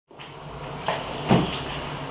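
Two short knocks close together about a second in, over a steady low room hum.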